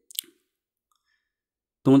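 A single short, sharp click just after the start, followed by dead silence.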